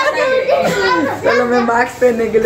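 Speech only: people talking, one of them a child.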